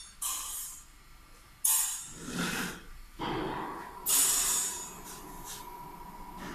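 Rotary cup filling and sealing machine cycling, its pneumatic cylinders venting compressed air in sharp hisses about once a second. A steady high whine joins about halfway through.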